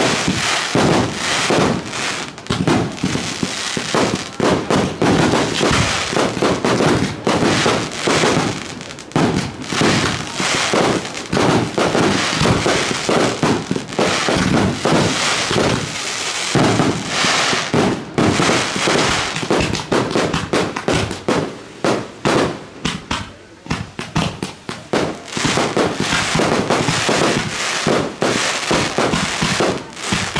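Fireworks display: a dense, continuous barrage of many overlapping bangs from aerial shells bursting, thinning briefly about two-thirds of the way through before picking up again.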